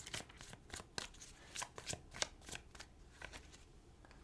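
Tarot deck being shuffled by hand: a soft, irregular run of short card clicks and flicks.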